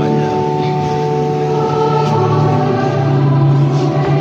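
A choir singing long, slowly changing held notes.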